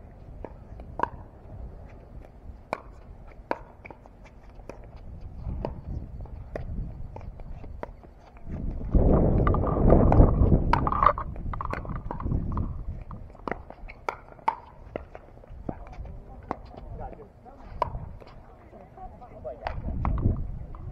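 Pickleball paddles striking a plastic ball in a rally: a string of sharp, irregular pocks. A loud low rumble swells up about nine seconds in and lasts a few seconds.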